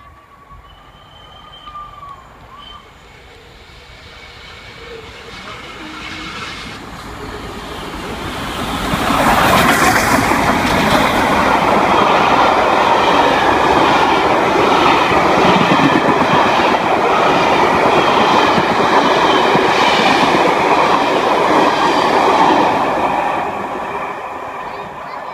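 The Flying Scotsman, an LNER A3 steam locomotive, approaching and passing at speed with its train of coaches: a rumble that builds steadily and is loudest from about nine seconds in as the engine goes by. Then come regular clicks of the coach wheels over the rail joints, fading near the end as the train draws away.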